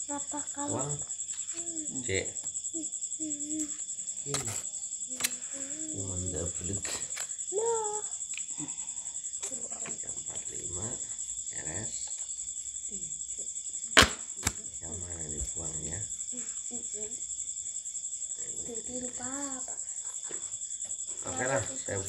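Crickets chirping in a steady, high-pitched trill, with low voices here and there. About fourteen seconds in comes a single sharp snap, the loudest sound.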